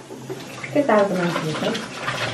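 A cleaver chopping a potato into sticks on a plastic cutting board: a run of quick light knocks. A voice is heard briefly about a second in.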